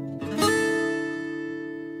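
Background music on acoustic guitar: a chord strummed about half a second in that rings on and slowly fades.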